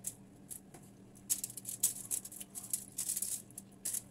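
Close, crisp crackling of eating crunchy fried tilapia by hand off an aluminium-foil-lined plate, in a dense run of small crackles from about a second in and a last burst near the end, over a faint steady low hum.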